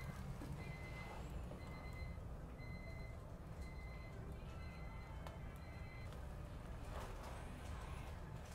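Faint high electronic beep, repeating about once a second and stopping about six seconds in, over a low steady hum.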